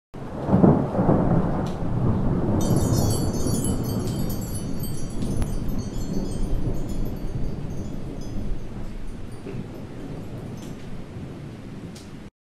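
Intro sound effect: a thunder rumble with a rain-like wash, joined about two and a half seconds in by high shimmering chimes, the whole slowly fading.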